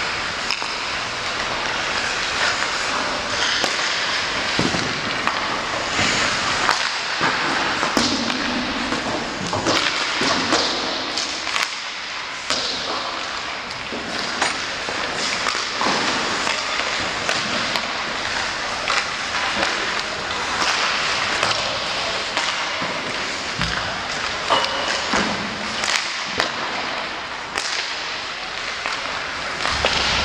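Ice hockey warmup shooting: irregular sharp cracks of sticks striking pucks and pucks hitting the goalie, boards and glass, over a steady scraping hiss of skates on the ice.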